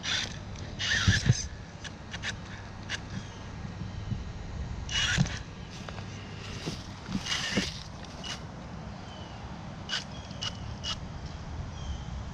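Small RC rock-racer truck crawling over wooden planks: tyres and chassis scraping and knocking on the wood, with a low rumble underneath, several short bursts of scratchy noise and a few sharp clicks, amid dry leaves crackling.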